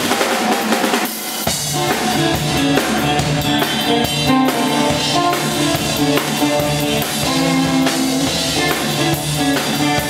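Rock band playing live through a concert PA in an instrumental stretch, with the drum kit (bass drum, snare and cymbals) loudest. For about the first second and a half the drums and cymbals play with no bass under them, then bass guitar and the rest of the band come back in.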